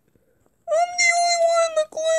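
A child's high-pitched voice lets out one long, level, cat-like whining cry, starting about two-thirds of a second in.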